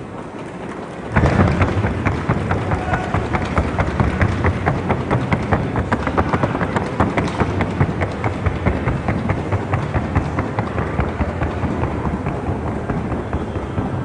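Rapid, even hoofbeats of a Colombian trot-and-gallop horse drumming on a wooden sounding board. They start suddenly about a second in, each strike sharp over a low boom, in a fast steady rhythm. This is the board that lets the judges hear the gait's rhythm.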